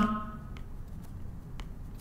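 A few faint taps of a stylus on a drawing tablet over a low room hum, with the tail of a man's voice trailing off at the start.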